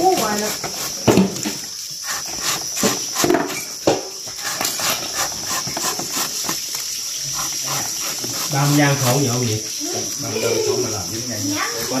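A knife slicing thin rounds off a raw banana stem, the slices dropping into a basin of salted water: a run of short cuts at irregular intervals. Crickets chirp steadily behind.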